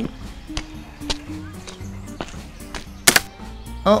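Quiet background music with a few soft ticks, then about three seconds in a single sharp crack of a twig snapping underfoot, loud enough to give a sneaking figure away.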